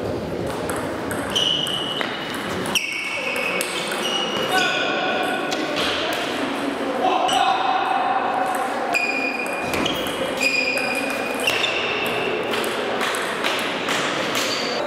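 Table tennis ball hitting rackets and the table during rallies, a string of short, sharp pings at irregular intervals ringing in a large hall. Voices chatter in the background.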